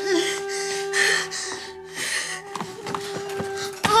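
Background music holding one steady sustained note, with a few short breathy bursts of noise over it in the first two seconds. A sharp knock comes near the end, just as shouting begins.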